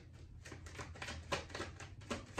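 Tarot cards being shuffled by hand: faint, irregular clicks of cards striking each other, a few a second.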